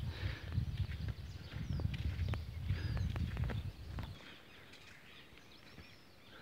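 Outdoor ambience while walking, with a low rumble, soft footstep ticks and faint bird chirps. About four seconds in the rumble cuts off suddenly, leaving only quiet, faint birdsong.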